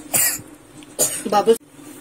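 A person coughing: two short coughs, the second about a second in and a little longer.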